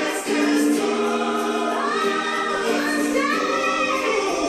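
Recorded gospel choir song, voices holding long notes, with a higher line that rises in the second half.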